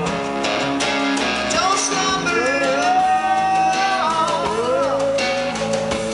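A live band plays a rock song on electric guitars, with long held vocal notes sliding between pitches over the strummed chords.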